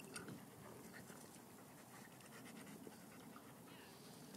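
Faint panting from dogs play-wrestling, with a few soft clicks.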